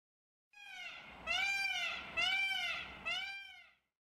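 Peacock calling four times, each call rising then falling in pitch; the first call is fainter than the three that follow.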